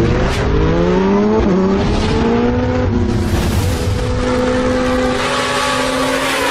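Car engine sound effect revving up, its pitch climbing for about three seconds and then holding a steady note.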